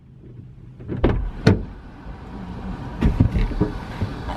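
Someone getting into a parked car's driver's seat: the car door and the seat give a few sharp knocks about a second in, and a cluster more near three seconds, over a low rumble.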